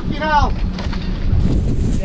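Diesel engine of a tracked grab excavator running steadily with a low rumble, with wind on the microphone. A short voice call comes right at the start.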